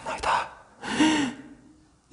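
A man's breathy gasps of astonishment: a sharp breath near the start, then a breathy, half-voiced "wah" about a second in.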